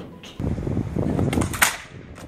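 A click at the start as a white plastic MacBook's lid snaps shut, then, over a low outdoor rumble, the laptop lands on a concrete path with a quick cluster of sharp clattering impacts about a second and a half in.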